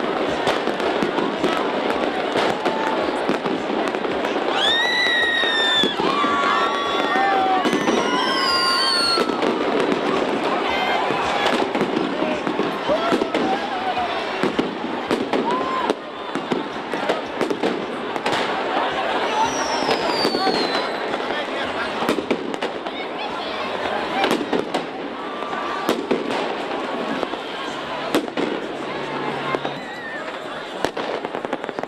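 A New Year's crowd talking and cheering, with firecrackers and fireworks going off in sharp bangs throughout. A few shrill whistles fall in pitch, about five seconds in, around eight to nine seconds and around twenty seconds.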